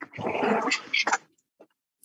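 A loud, rough burst of background noise lasting about a second, coming through a participant's unmuted microphone on an online call.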